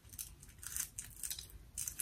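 Scissors snipping through a stretchy wig cap: a faint, irregular run of short, sharp cuts.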